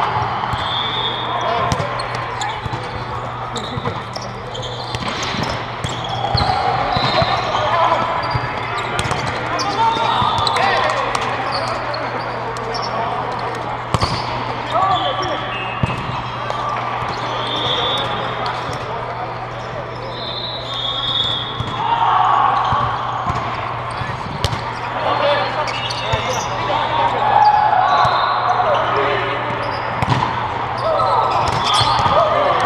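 Indoor volleyball play in a large, echoing hall: scattered ball hits and bounces, short high shoe squeaks on the court, and players' voices calling, over a steady low hum.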